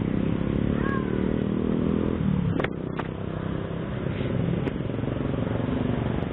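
Small motor scooter engines idling close together in stopped traffic, a steady low engine hum, with two sharp clicks about halfway through.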